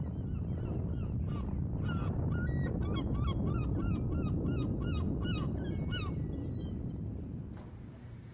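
A flock of birds calling in flight: many short, pitched calls, about three a second, starting about two seconds in and thinning out after six seconds, over a steady low rumble that fades near the end.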